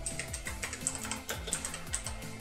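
Computer keyboard being typed on: quick irregular key clicks over steady background music.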